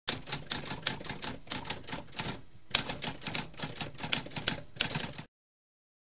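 Typewriter keys typing rapidly, a dense run of clacks with a brief pause about halfway through, stopping abruptly a little over five seconds in.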